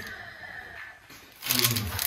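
The plastic wrapping of a pack of sandwich thins rustles faintly as it is handled. About one and a half seconds in, a low-pitched man's voice gives a short reply.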